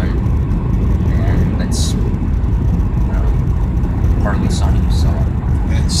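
Steady road noise inside a car cabin at highway speed: a constant low rumble of tyres and engine with a faint hiss over it.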